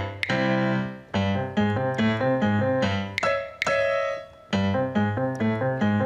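Instrumental break of a children's song played on an electronic keyboard with a piano sound: chords over a stepping bass line, with no singing.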